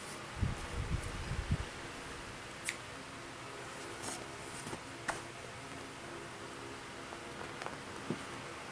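Hands handling stitched cross-stitch cloth and paper on a table: a few soft bumps in the first second and a half, then scattered light clicks and rustles, over a steady faint hum.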